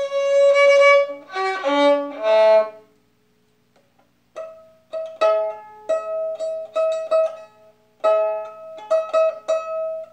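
Solo violin: a few sustained bowed notes for about three seconds, a pause of about a second, then a run of short plucked pizzicato notes.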